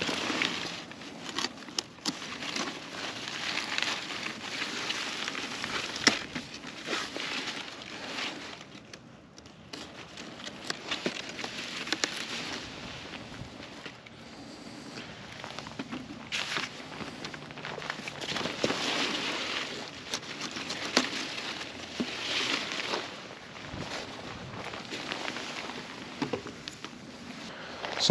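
Zucchini leaves and stems rustling and crackling as they are pushed aside and handled, with scattered sharp clicks and snaps as the fruit is cut off the plants with a knife.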